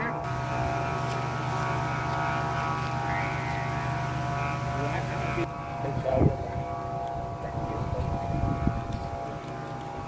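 Steady drone of several held pitches at once, the sound of bamboo kite flutes on kites flying in strong wind, with wind noise on top. There is a brief knock about six seconds in.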